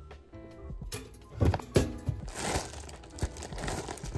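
Plastic bread bag crinkling as it is handled and twisted closed, with two sharp knocks about a second and a half in.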